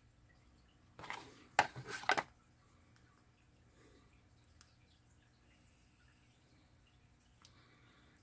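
Brief handling noise of the instruction sheet and screwdriver: a few short rustling, scuffing sounds over about a second, starting a second in. After that there is only quiet room tone and a faint click or two.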